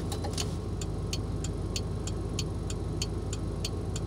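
Turn-signal flasher of a 1995 Chevrolet Suburban K1500 ticking steadily, about three clicks a second, over the engine idling. The signals and hazards are switched off and no lamps are flashing, so the flasher should be silent. It is a wiring fault that replacing the multifunction switch cured.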